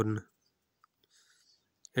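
A man's spoken word ends just at the start, then near silence broken by two faint clicks and a faint hiss.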